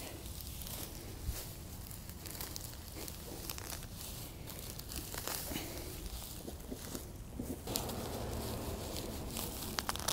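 Gloved hands pulling a shallow-rooted clump of ornamental onion (allium 'Millennium') apart into divisions: faint rustling of the grassy foliage and soft tearing of roots and soil, with scattered small crackles. A low rumble joins in the last couple of seconds.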